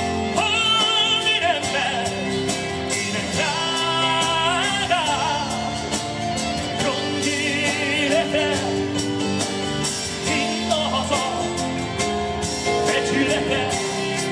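Live folk-rock band: a man singing in Hungarian, holding long notes with vibrato, over strummed acoustic guitar and a drum kit.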